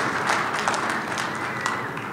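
Audience applause from a large crowd in a big hall, fading out over the two seconds.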